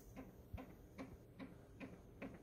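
Small loudspeaker driven by an ESP32 sound-playback board, faintly playing a track of regular ticks, about two and a half a second.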